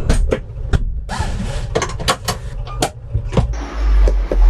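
Clicks and knocks from a Citroën Ami's cabin fittings and door being handled, about eight sharp ones spread over a few seconds, over a low rumble.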